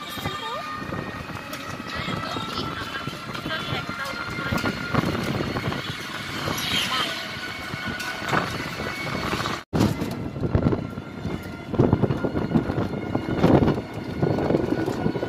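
Road and vehicle noise heard from an open rickshaw, with people's voices and a steady high tone through the first few seconds; the sound breaks off for an instant about two-thirds through.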